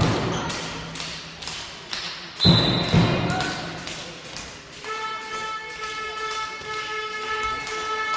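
Spectators in a sports hall beating out a steady rhythm, about three strikes a second. About five seconds in, a held pitched tone joins it and lasts to the end.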